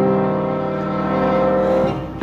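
Instrumental hymn accompaniment: one sustained chord held and slowly easing off.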